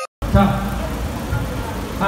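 A jingle cuts off at the very start and, after a split-second gap, street sound begins: a steady low rumble of engines and traffic with a man's voice over a loudspeaker.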